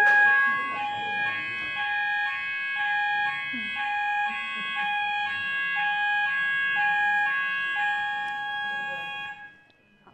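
An electronic tune of short alternating beeping notes, about two a second, over a steady high tone, repeating evenly like an alert or ringtone and cutting off suddenly about nine and a half seconds in.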